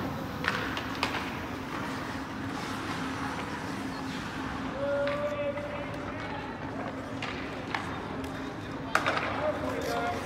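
Ice hockey play heard in a rink: scattered sharp clacks and scrapes of sticks, puck and skates on the ice, with voices calling out and a steady low hum behind. A sharp crack near the end is the loudest sound.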